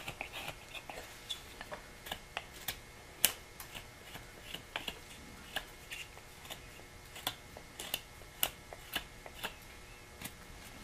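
A carving knife with a modified Mora blade making small slicing cuts in basswood. Each cut is a short click, coming irregularly about two or three times a second; the loudest is about three seconds in.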